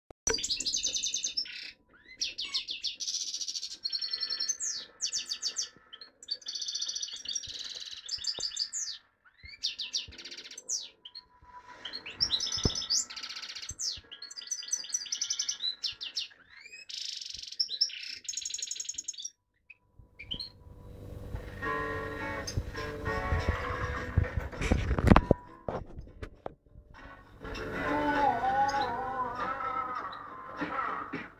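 Caged European goldfinch singing: quick bursts of high, rapid trilled and twittering phrases with short pauses between them. After about twenty seconds the song stops and a lower background sound takes over, with a loud knock about two-thirds of the way through.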